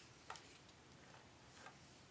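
Near silence: room tone, with two faint ticks.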